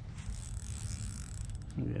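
Fishing reel being cranked to retrieve a Ned rig: a steady mechanical gear whir from the reel.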